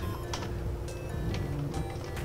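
Soft background music with a handful of sharp computer-keyboard clicks as a few characters of code are typed.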